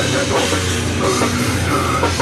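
Heavy metal band playing live and loud: distorted electric guitars over a Pearl drum kit with cymbals, without a break.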